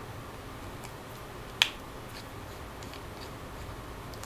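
Small screwdriver backing a screw out of a 2.5-inch laptop hard drive's metal mounting bracket: faint ticks and one sharp click a little past halfway, over a low steady hum.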